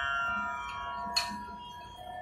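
A steady musical drone of several held tones that fades slowly, with one sharp click a little past the middle.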